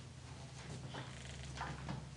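Quiet room tone with a steady low hum, and a few faint footsteps or shuffles on a wooden stage floor.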